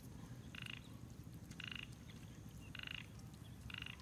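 A frog calling faintly: four short croaks about a second apart.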